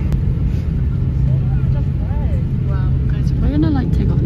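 Airliner cabin noise: a steady, loud low drone of the engines and air system with a constant low hum, and faint voices over it.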